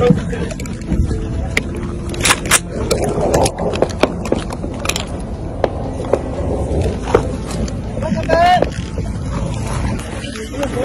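Rough handling noise from a phone being moved and rubbed, with scattered knocks and scrapes, over the low rumble of a vehicle. Muffled voices in the background, and a short wavering cry about eight and a half seconds in.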